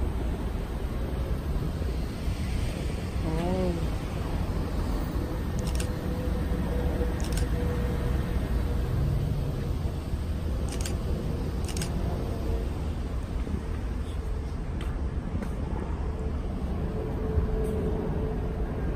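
Outdoor urban ambience: a steady low rumble of distant traffic and wind on the microphone. A short wavering voice-like sound comes about three and a half seconds in, and a few faint clicks follow.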